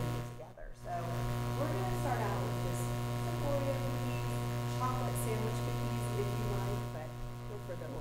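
Steady electrical mains hum with a buzzing edge on the audio feed, with faint talking underneath. The sound dips out briefly about half a second in.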